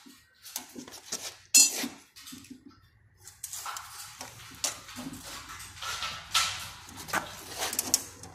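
Irregular knocks, clinks and scrapes of gypsum board pieces and hand tools being handled on a concrete floor, the loudest a sharp knock about a second and a half in.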